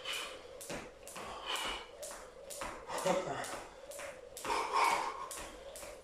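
Skipping rope slapping a tiled floor with each jump, about twice a second, with heavy breathing between.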